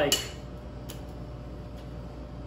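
A metal cocktail shaker handled empty, with no ice in it: one light click just under a second in over a steady low room hum.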